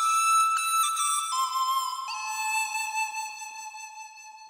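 Background music: a slow solo flute melody stepping down through three held notes, the last one long and fading away.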